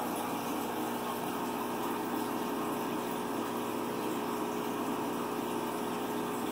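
Aquarium air pump and filter running steadily, with air bubbles rising through the tank water.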